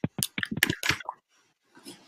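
Handling noise on a wired earphone microphone as it is put on: a quick run of scrapes and clicks in the first second, then a softer rustle near the end.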